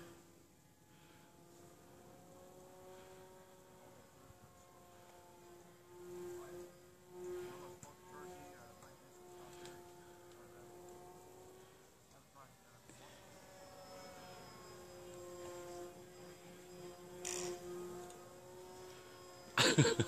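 Faint, distant drone of a radio-controlled L-19 model airplane's motor and propeller as it flies overhead, a steady buzzing tone that swells and fades with small wavers in pitch as the plane changes distance and throttle.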